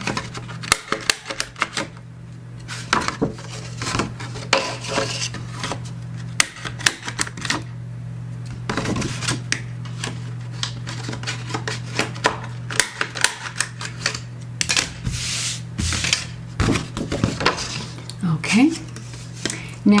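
Hand-held corner rounder punch clicking repeatedly as it is squeezed through the corners of a kraft cardboard file folder, with the card rustling as it is handled between cuts.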